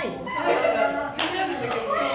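A young woman talking, with two sharp hand claps a little past the middle, the second fainter.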